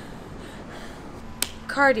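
Low, steady background hiss, broken about a second and a half in by a single sharp click, followed by a woman's voice.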